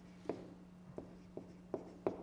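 A pen tapping and ticking against the glass of an interactive touchscreen display while handwriting is written on it: four short taps, with a faint steady hum underneath.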